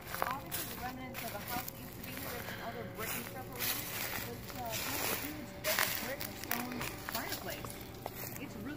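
A woman's voice talking at a distance, too faint to make out, with footsteps crunching through dry leaves and twigs.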